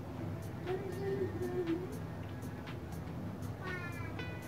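Eating by hand: faint scattered clicks and smacks from fingers working rice and vegetables and from chewing, over a steady low hum. A brief high rising sound comes just before the end.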